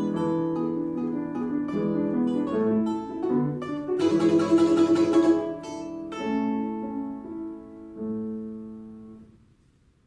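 Balalaika playing with piano accompaniment: plucked notes, a fast tremolo strum about four seconds in, then the final chords ring out and fade away near the end.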